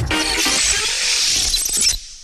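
Closing jingle of an animated news-programme logo: a short burst of electronic music with a bright, high rushing sweep over it, cutting off sharply near the end.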